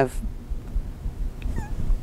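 A pause in speech filled by a low, uneven rumble, with a faint short squeak about one and a half seconds in.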